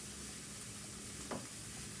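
Onion and spices sautéing in olive oil in a skillet, a steady sizzle while being stirred with a spoon. A single knock about a second and a half in.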